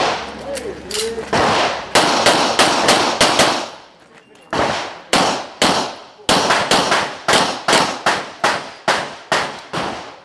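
Rapid pistol fire on a practical-shooting stage: about twenty shots at roughly three a second. There is a run of six shots, a gap of about a second near the middle, three more, then a steady string of about a dozen to the end.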